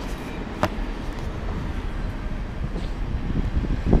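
Low, uneven rumble of wind buffeting the microphone outdoors, with a single sharp click about half a second in.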